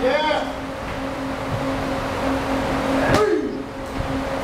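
A glove strike landing hard on a leather Thai pad about three seconds in, followed by a short falling vocal call. A short vocal call comes at the start, over a steady low hum.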